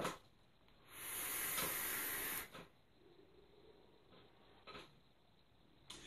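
Steady hiss of a vape draw on an Oumier VLS dripping atomizer, air and breath rushing for about a second and a half starting about a second in, followed by one short faint puff of breath near the end.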